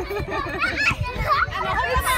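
Young children's voices chattering and calling out while they play, several high voices overlapping.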